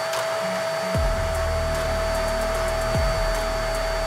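Vacuum cleaner motor running at full speed with a steady high whine, drawing vacuum on the casting flask of a vacuum casting station while molten brass is poured.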